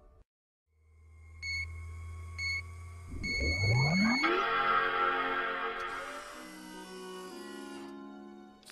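Robot power-up sound effects: a low electrical hum, then three electronic beeps as the solar charge meter fills, a steeply rising whir, and a rich Macintosh-style startup chime a little past the middle, followed by soft sustained tones.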